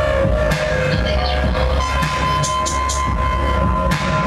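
Live electronic music with a heavy deep bass and sharp percussive hits. A steady high tone comes in about halfway and holds.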